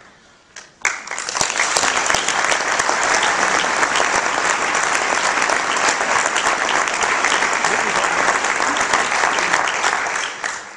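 Audience applauding, breaking out suddenly about a second in and holding steady.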